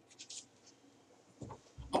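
Faint scratching of a stylus writing on a tablet in a few short strokes, then a soft low thump near the end.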